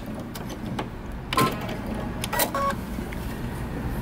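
Electric sewing machine running as it backstitches to lock the end of a seam, with a steady hum and a couple of sharp clicks.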